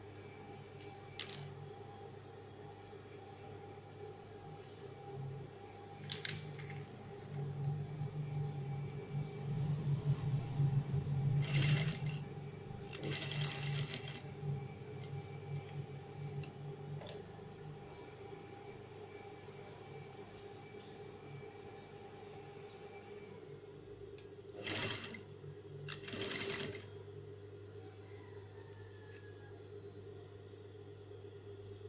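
Industrial sewing machine stitching bias binding onto fabric: its motor hums steadily while the machine stitches in runs, loudest around the middle. A few sharp clicks come in between.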